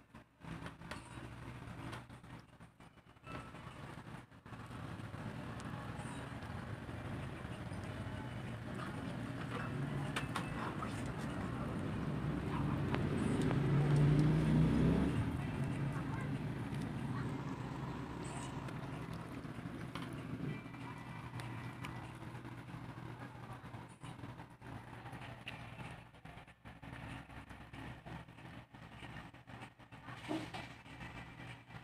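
Low rumble of a passing vehicle, building to a peak about halfway through and then fading away.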